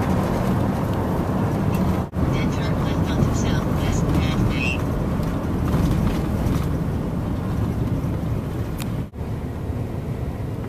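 Steady road and engine noise of a car driving, heard from inside the vehicle. The sound cuts out abruptly twice, about two seconds in and near the end.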